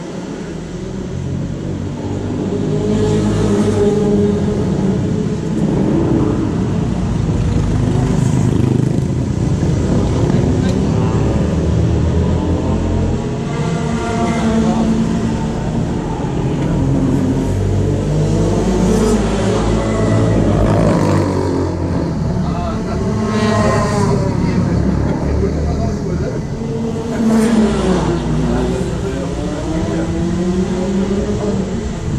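A motor vehicle engine running, its pitch rising and falling several times, with muffled voices at times.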